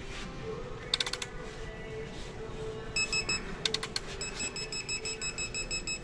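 Digital torque wrench beeping in rapid, steady-pitched pulses from about halfway on, signalling that a Cummins ISL main bearing cap bolt is being pulled up to its target torque. A few quick clicks sound about a second in.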